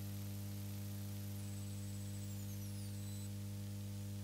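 Steady electrical mains hum with a ladder of overtones on the recording, and a thin high-pitched electronic whine that drops in pitch about a second and a half in, slides lower and stops a little past three seconds.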